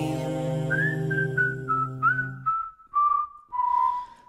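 A person whistling a short melody in separate notes that step downward in pitch. Under the first half, held chords of the preceding carol accompaniment sound, then stop about halfway through.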